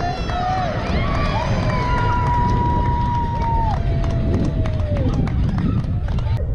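Several overlapping voices of softball spectators and players shouting and cheering, with one long held call in the middle and another just after it, over a steady low rumble of wind on the microphone.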